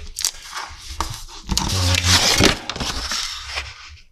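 Hands handling a sheet of watercolor paper and pressing masking tape onto it on a wooden table: rustling and scraping with small clicks, loudest about two seconds in.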